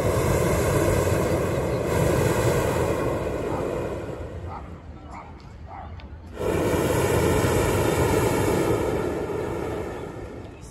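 Hot air balloon's propane burner firing in two long blasts, the first about four seconds and the second about three and a half seconds, with a pause of about two seconds between them. The burner is heating the envelope as the balloon climbs just after lift-off.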